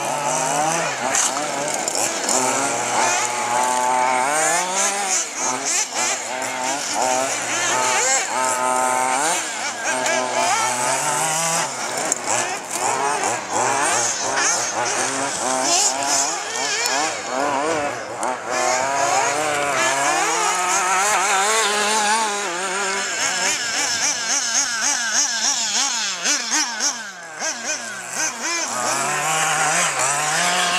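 Small two-stroke engines of several radio-controlled buggies racing, their pitch rising and falling over and over as they accelerate and lift off through the corners.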